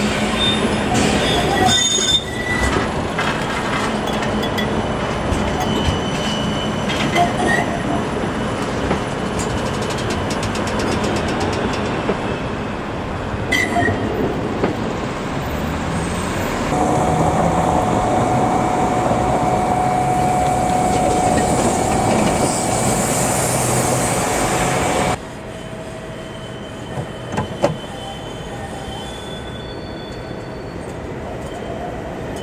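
A city tram passing close, with steady rolling and wheel noise on the rails. More than halfway in, a steady high squeal joins it and holds for several seconds until the sound cuts off abruptly to quieter street noise with an approaching tram.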